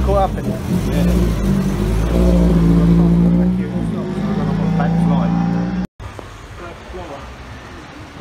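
Race car engines running and revving loudly as cars pull away down a pit lane. The sound cuts off abruptly about six seconds in, leaving a much quieter background.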